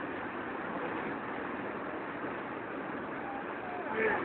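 Steady outdoor background noise at a football pitch, with faint distant voices calling out from the field a little past three seconds in.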